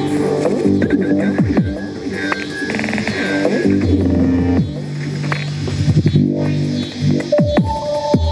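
Bass-heavy electronic dance music, in a dubstep or drum-and-bass style, with held bass notes and repeated sweeps falling in pitch, and a brief break about six seconds in.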